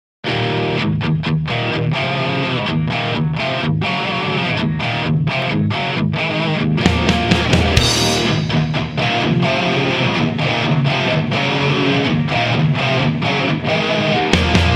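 Studio-recorded rock song opening on a distorted electric guitar riff broken by short stops. About seven seconds in, bass and drums come in under it, with a cymbal crash a second later.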